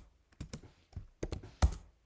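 Typing on a computer keyboard: a quick, irregular run of separate keystrokes, about eight of them.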